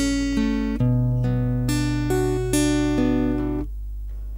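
Acoustic guitar with a capo, fingerpicked in a bass-then-3-2-1-2-3 arpeggio pattern, one note about every half second, with a new bass note and chord about a second in. The ringing notes stop shortly before the end, over a steady low hum.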